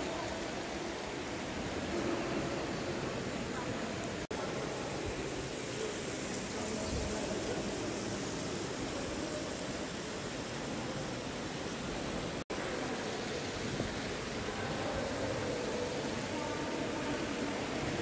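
Steady, even rushing background noise of a large hall, with faint murmuring voices of people inside it, broken by two brief dropouts.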